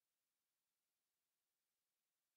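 Near silence: a pause with no sound beyond a faint, even hiss.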